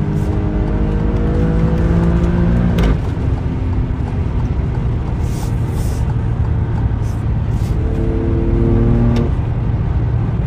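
Car engine heard from inside the cabin, driven hard in race mode under acceleration with a low drone. Its note breaks off sharply about three seconds in, as at a gear change, and returns about eight seconds in.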